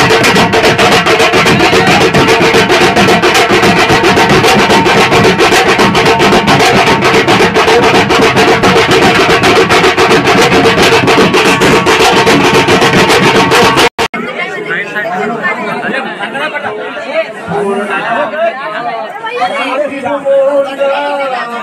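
Loud music with fast, dense drumming that cuts off abruptly about fourteen seconds in. After the cut comes a man's singing or chanting voice over crowd chatter.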